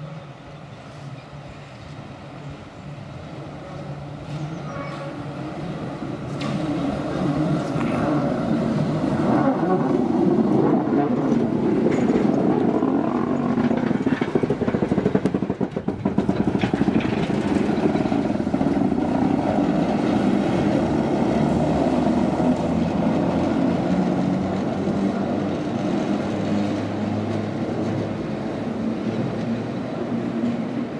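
A 1936 Düwag tramcar running on its track, the rumble of its wheels and motors growing louder over the first ten seconds as it approaches and passes close by, then staying loud.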